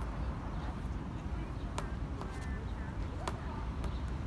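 Outdoor waterside ambience: a steady low rumble with faint distant voices and a few sharp clicks.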